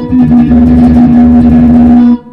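Stratocaster-style electric guitar playing one low note, picked rapidly over and over and held steady, which stops just after the end.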